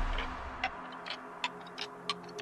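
Euro house dance music dropping into a breakdown: the bass and kick drum cut out just as it starts, leaving sparse clicking percussion ticks a few times a second with faint short synth blips.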